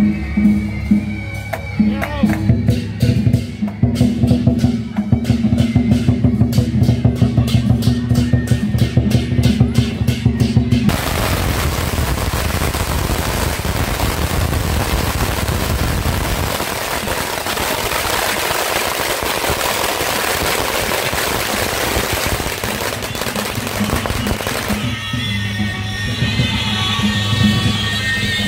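A long string of firecrackers going off in one dense, continuous crackle for about fourteen seconds. Before it comes loud music with a fast, regular beat, and the music returns near the end.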